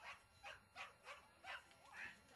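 A dog yipping in short, quick, repeated yelps, about six in two seconds, faint and at a distance.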